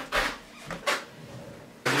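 Wooden canvas stretcher frame and canvas being handled on a hard floor: a few short knocks and rustles, then near the end a loud scraping rush as the frame is shifted across the floor.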